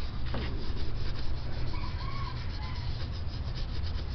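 Quick, repeated scrubbing strokes rubbing over a hazy car headlight lens as it is cleaned by hand.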